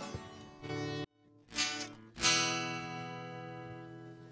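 Acoustic guitar being played: a few notes, a brief silent break, then a strummed chord about two seconds in that rings out and slowly fades.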